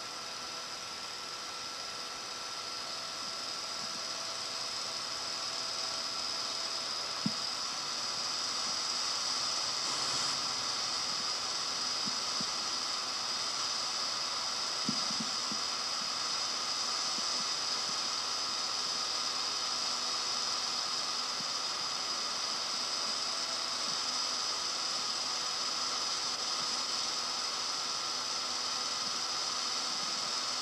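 Steady hiss with faint, even hum tones under it: the background noise of an old tape recording with no narration, broken by a couple of faint clicks.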